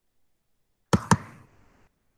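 Two sharp clicks about a fifth of a second apart, about a second in, each followed by a short fainter noise that dies away; silence before them.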